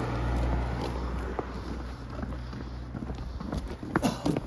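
A car driving past up the road, its low engine and tyre hum fading after the first second or so, with faint footsteps on the pavement.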